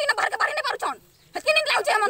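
A woman wailing in grief, a loud, wavering lament in two stretches with a short break about a second in.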